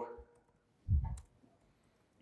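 Laptop keyboard keystrokes, a few faint scattered clicks, with one short low thump about a second in.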